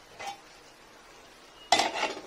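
A steel lid knocking against a steel kadai: a light tap, then a loud metal clatter near the end.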